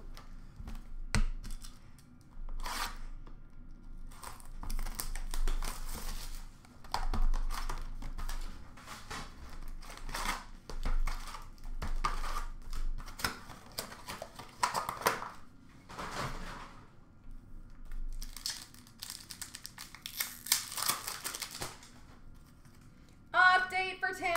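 Foil wrappers of trading-card packs being torn open and crinkled, with cards handled and shuffled: a run of short rustles and rips with brief pauses between them. A voice starts just before the end.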